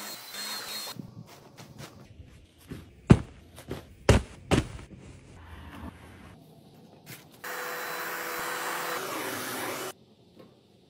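Cordless handheld vacuum running on upholstery with a steady whine, cut off about a second in. Knocks and three loud, sharp thumps follow; then a steady machine hum runs for about two and a half seconds and stops abruptly near the end.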